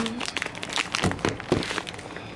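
Handling noise on a phone's microphone: a run of irregular clicks and rustles as the phone is moved from the hand and set down on a counter.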